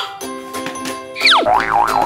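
Background music with cartoon sound effects over it: held chord tones, then about a second in a quick falling whistle, followed by a wobbling boing tone that warbles up and down.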